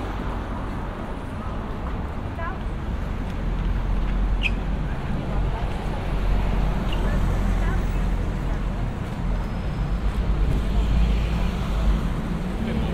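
City street ambience: steady low traffic rumble from passing cars and a double-decker bus, growing louder about a third of the way in, with passersby talking.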